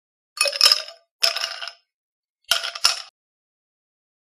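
Edited-in title-card sound effect: four short clinks with a glassy, metallic ring, two about a second apart and then a quick pair, over dead silence.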